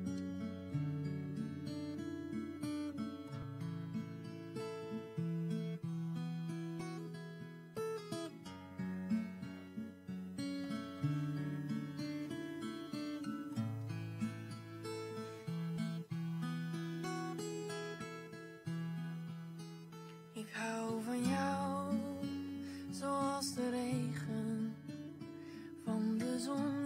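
Solo acoustic guitar playing a slow instrumental intro of single picked notes over held bass notes. A sung voice joins briefly near the end.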